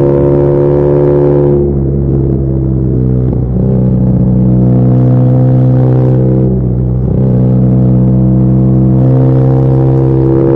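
BMW R nineT's 1170 cc air/oil-cooled boxer twin running under way at steady revs through aftermarket header pipes with the exhaust flapper valve removed. The engine note dips and picks up again a few times, about two, three and a half and seven seconds in.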